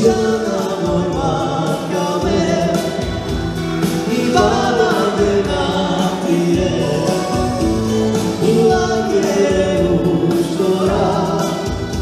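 A live band playing a song with a singer, loud and steady.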